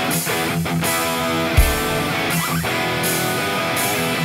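Band music led by electric guitar, with drums keeping a steady beat.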